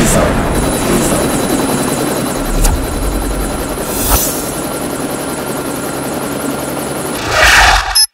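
Helicopter rotors beating steadily with engine whine, swelling louder near the end and cutting off suddenly.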